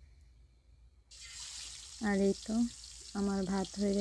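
Hot oil sizzling as a piece of pangas fish is laid into the frying pan: a hiss that starts suddenly about a second in and carries on steadily. A woman's voice speaks briefly twice over it.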